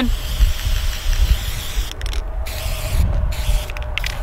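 Wind buffeting an outdoor microphone: an uneven low rumble with a steady hiss over it and a faint steady hum underneath.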